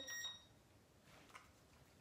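Near silence: room tone, with the tail end of a woman's spoken word at the very start.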